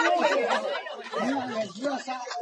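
Several people talking over one another in chatter.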